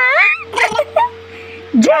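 Baby boy's high-pitched squealing laughter: a squeal that swoops up and down right at the start, shorter bursts after it, and another swooping squeal near the end, over a steady low hum.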